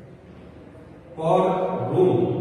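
A man's voice with long, drawn-out syllables, starting a little after a second in, following a short lull.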